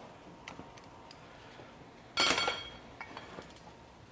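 Metal stock being handled at a steel bench vise: a few light clicks, then about two seconds in a clink of metal on metal that rings briefly, followed by a few more small clicks.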